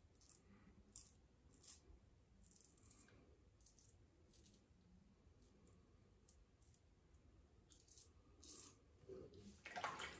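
Faint, irregular short scratchy strokes of a PAA Symnetry double-edge safety razor cutting lathered stubble on the chin and upper lip. A louder noise comes near the end.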